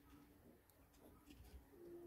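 Near silence: room tone, with two faint low held calls from a bird, the second longer and near the end.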